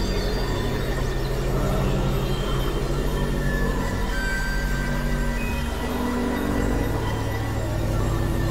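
Experimental electronic drone music from synthesizers: low, sustained, buzzing tones that step to new pitches about four and five and a half seconds in, with thin higher tones drifting over them.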